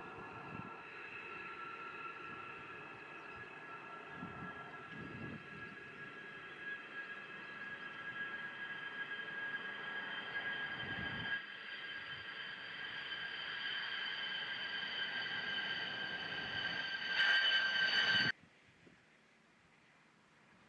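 B-2 Spirit's General Electric F118 turbofan engines whining steadily with several high tones while the bomber is on the runway. The sound slowly grows louder, swells near the end, then cuts off suddenly.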